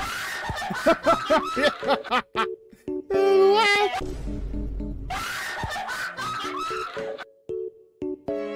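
Women laughing hard in repeated high-pitched bursts over light background music, with one loud, drawn-out high-pitched cry about three seconds in.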